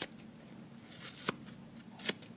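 Dry kitchen sponge's soft foam side being ripped apart by hand. There is a short rip at the start and a longer rip about a second in that ends with a sharp snap.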